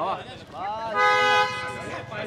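A car horn sounding once, a steady honk of about half a second about a second in, amid shouting voices.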